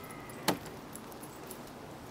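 A wooden pole knocks once against the log shelter frame about half a second in: a single sharp wooden clack. Faint outdoor background otherwise.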